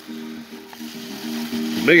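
Thin plastic bag crinkling and rustling among foam packing peanuts as hands dig through a cardboard box, the rustle growing louder toward the end. Background music with steady held notes plays underneath.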